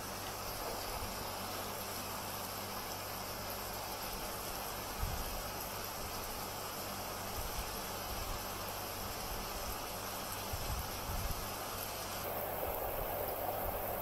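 Steady background hiss, with a few faint low knocks midway and again later on.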